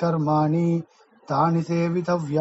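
A man chanting Sanskrit verse in a recitation tone, holding a nearly level pitch through two phrases with a short breath about a second in.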